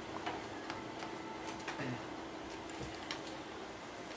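A few faint, irregular clicks and light taps over a steady low hum and hiss.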